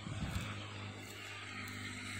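A motor running with a steady low hum and a background hiss, with a few low knocks near the start.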